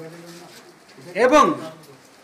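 A man's voice: one short spoken utterance about a second in, between brief pauses.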